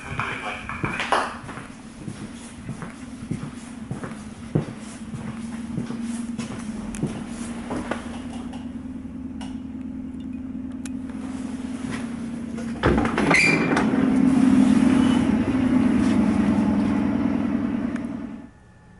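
Inside an ER2K electric multiple-unit car: a steady low hum from the train's equipment with scattered clicks and knocks. About two-thirds of the way through a knock comes, and the hum becomes louder and rougher until the end.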